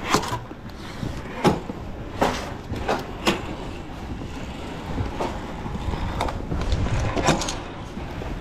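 Footsteps and scattered knocks of people climbing the steep walkway of a wooden roller coaster's lift hill, stepping up its wooden rungs like a ladder, over a steady low noise.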